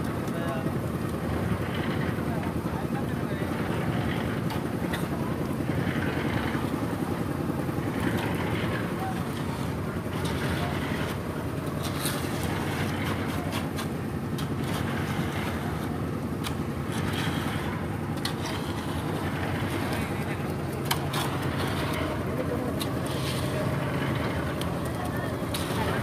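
A construction machine's engine running steadily at a concrete slab pour, with people's voices and scattered knocks over it.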